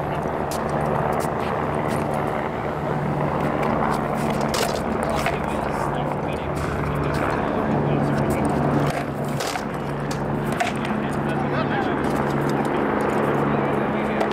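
Sword blows striking shields and armor in armored combat: scattered sharp knocks, a few seconds apart, over a steady low hum and background noise.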